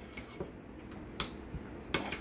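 A utensil knocking and scraping against a mixing bowl as butter, garlic and fish seasoning are stirred together, with three sharp clicks spaced about a second apart.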